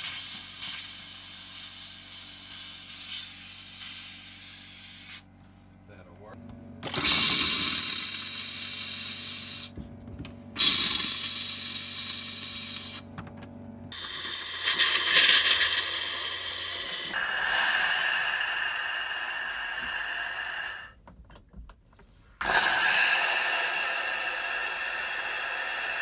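Compressed air blowing out of a travel trailer's faucets and toilet valve to clear the water lines: several loud bursts of hissing air with spitting water. Each burst starts and stops suddenly as a fixture is opened and closed, with short quiet gaps between.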